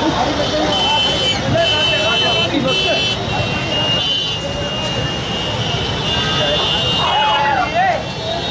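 A street crowd talking over steady traffic noise, with several short high-pitched vehicle horn toots cutting through, a few in the first three seconds, one at about four seconds and one near the end.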